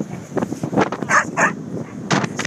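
Dogs at rough play, with two short, high barks in quick succession just after a second in.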